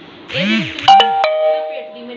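Electronic doorbell chime sounding a two-note ding-dong, a higher note then a lower one that rings on and fades. It is preceded by a brief warbling sweep and a sharp click.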